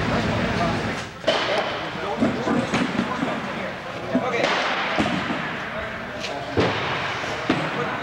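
Wooden model-railroad layout modules being handled and loaded into a trailer's racks: four sharp knocks and thumps spread through, amid people talking. A steady low hum fills the first second.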